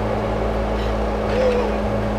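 Women crying, with a short wavering sob about one and a half seconds in, over a steady low engine-like hum.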